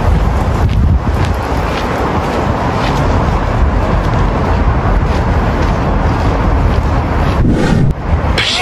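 Wind buffeting the phone's microphone: a loud, steady rumbling rush that breaks off briefly near the end.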